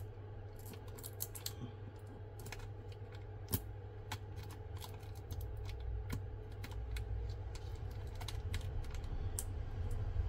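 Small irregular clicks and scrapes of a plastic pry tool and fingers against a smartphone's battery and metal frame, as the battery's adhesive pull tab is worked loose. They sound over a steady low hum.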